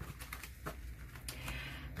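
A small paper envelope being handled and its flap opened: soft paper rustling with a few light clicks and taps.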